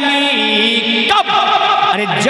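A man singing a naat, an Urdu devotional poem, into a microphone. He holds long melodic notes with ornamented pitch turns, breaks briefly about a second in, and starts a new phrase.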